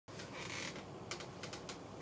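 Faint rustle followed by about five light clicks, as a person turns round in a seat to face the camera.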